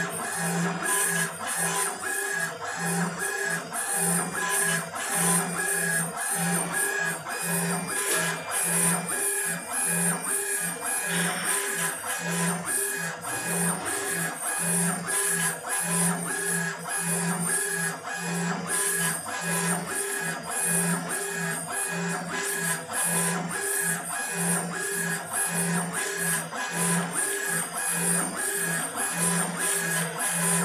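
Laser engraving machine raster-engraving granite: the motors driving the head whine in an even pulsing rhythm, about one and a half pulses a second, as the head sweeps back and forth.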